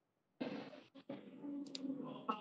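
A video-call microphone opening: dead silence gives way about half a second in to faint room noise with a low hum and a few soft clicks and handling sounds.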